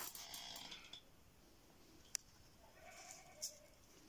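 A kitten mewing, faint: one drawn-out cry about two and a half seconds in, with a sharp click shortly before it.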